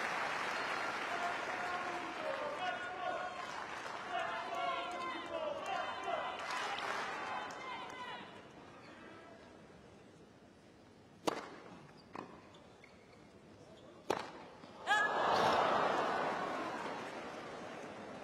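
Stadium tennis crowd clapping and murmuring, dying down about eight seconds in. Then come a few sharp, isolated tennis-ball impacts: bounces and racquet strikes. Just past the middle of the second half there is a louder hit and a brief swell of crowd noise.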